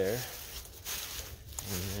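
Footsteps through dry fallen leaves, a soft rustling between a man's spoken words at the start and near the end.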